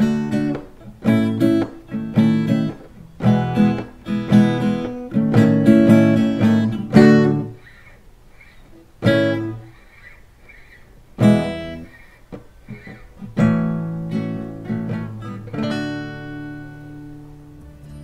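Acoustic guitar strummed through a D–A–E–A chord progression: a steady rhythmic run of strums for about seven seconds, then a few slower single strums, the last chord left ringing out and fading.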